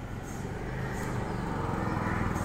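A vehicle's engine running nearby, a low steady rumble with a fine flutter that grows gradually louder, as if the vehicle is approaching.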